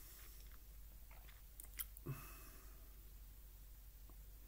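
Mostly quiet, with faint mouth clicks and lip smacks from a man, and one short low grunt about two seconds in.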